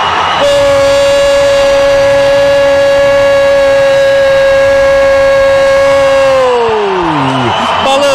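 A sports commentator's long goal cry, one sustained "gol" shouted at a steady high pitch for about six seconds, then falling away in pitch near the end.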